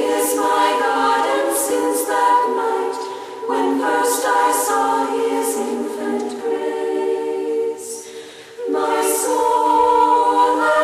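Choir of Benedictine nuns singing a hymn in women's voices without accompaniment, in sustained phrases. Brief breaks between phrases come about three and a half seconds in and again shortly before the end.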